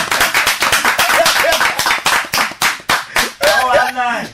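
Hand clapping in a quick, steady run of sharp claps, several a second, with speech coming back in near the end.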